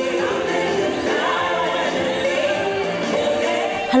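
A choir of many voices singing together in one sustained, even song.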